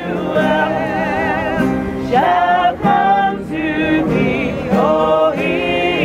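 A mixed gospel choir singing a Christmas carol with acoustic guitar accompaniment, in held, slightly wavering sung phrases that break and start again every second or two.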